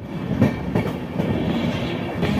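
Passenger train coach running along the track, heard from its open doorway: a steady rumble of wheels and carriage noise.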